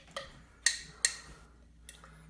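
Glass jar of soaked sesame seeds being handled at the lid: about four sharp clicks, the two loudest about half a second apart in the middle.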